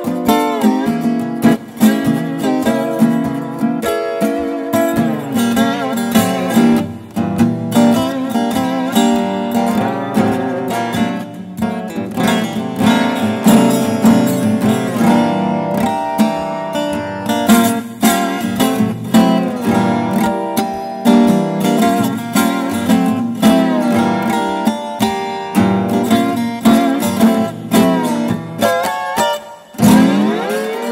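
Acoustic Weissenborn-style hollow-neck lap steel guitar, built by Michael Gotz, played fingerstyle with a steel bar: a continuous stream of picked notes with pitches sliding between them.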